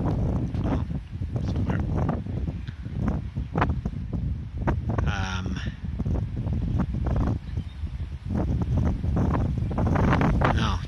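Wind buffeting the microphone in uneven gusts. About halfway through there is one brief pitched cry.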